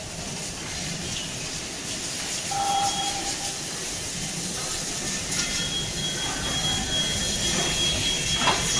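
Pallet production line running: the chain conveyor and automatic stacking machine give a steady mechanical noise. A brief squeal comes about two and a half seconds in, and a thin high whine sets in about halfway.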